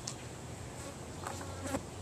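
Steady insect buzzing, low in level.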